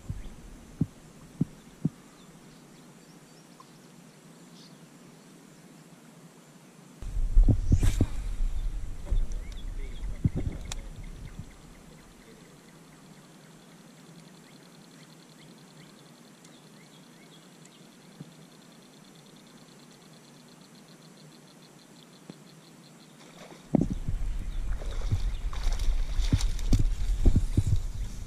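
Mostly quiet outdoors at a pond, with a faint, high, evenly pulsing trill through the middle. It is broken twice by a few seconds of loud, low rumbling noise on the microphone, the second as someone pushes through tall grass near the end.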